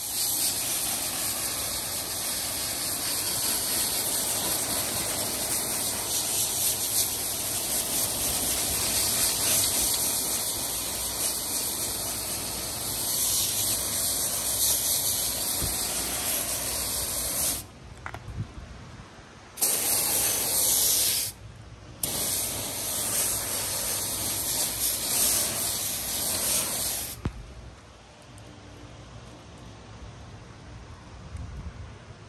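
Garden hose spray nozzle spraying water onto soapy plastic trim pieces on concrete, rinsing them. It hisses steadily for about seventeen seconds, stops for two, sprays briefly, stops again, then sprays for about five more seconds and shuts off a few seconds before the end.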